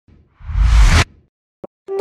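News-intro whoosh sound effect: a rising rush over a deep rumble that swells from about half a second in and cuts off suddenly at about a second, followed by a short click.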